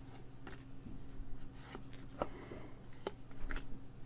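Trading cards sliding and flicking against one another as they are thumbed off a pack stack one by one: a quiet rustle broken by a few short clicks.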